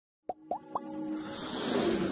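Sound effects of an animated logo intro: three quick pops rising in pitch, about a quarter second apart, then a whoosh that swells louder as the intro music builds.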